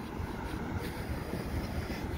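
Quiet downtown street ambience: a steady low hum of distant traffic.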